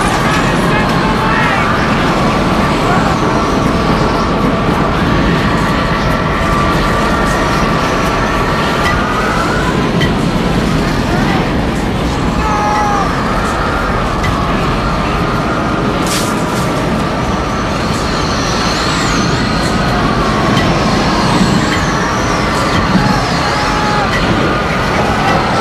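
Tornado sound effect: a loud, steady roar of wind with wavering, howling whistles rising and falling over it. The whistles fade for a moment near the middle, and a brief sharp crack comes about two-thirds of the way through.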